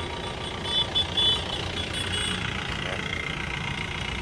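Mahindra Bolero SLX's diesel engine idling steadily, a low even rumble.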